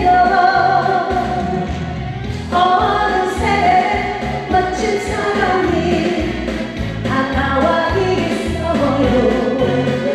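A woman singing a Korean trot song into a microphone over an instrumental backing track with a steady beat.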